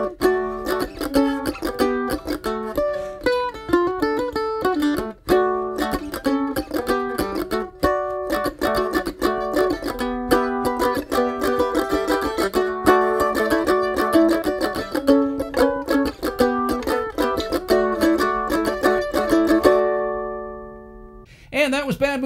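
F-style mandolin played with a pick: a solo of quick single-note licks and chord stabs worked around the D, A and G chorus chords. The last chord rings out and fades about two seconds before the end, followed by a man starting to speak.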